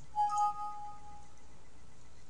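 A short computer system chime: one bell-like ding sounding two pitches at once, ringing out and fading within about a second.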